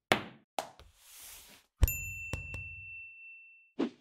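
Logo sound effect: a few quick swishes, then a sharp knock with a high bell-like ding that rings on for almost two seconds, with two light taps just after the hit.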